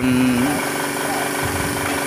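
A motor or engine running steadily in the background, giving an even mechanical hum, with a man's voice briefly at the start.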